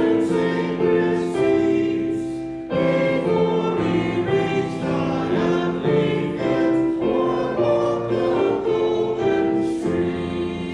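A choir singing a hymn in long held chords, with a short break between phrases about two and a half seconds in.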